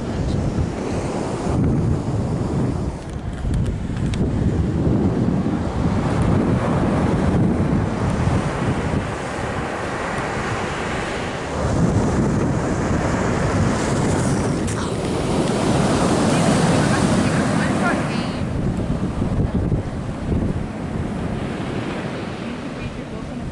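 Ocean surf breaking and washing on the beach, its roar swelling and easing with each set of waves, with wind buffeting the microphone.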